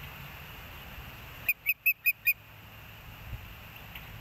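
Osprey giving a quick run of five short, high whistled chirps about a second and a half in, over a steady low background hum.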